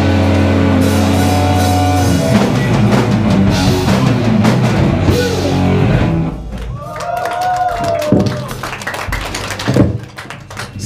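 Heavy metal band playing live, with drum kit and distorted electric guitars loud and dense. The song ends about six seconds in, leaving quieter stage sounds and a sharp loud hit just before the end.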